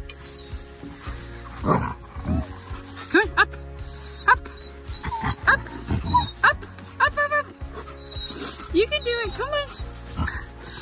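A small dog whining in a string of short, rising-and-falling whimpers, asking to be lifted onto a hay bale it cannot jump up onto. Background music runs underneath.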